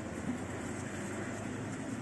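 Steady low background hum and hiss of room tone, with no distinct sound event.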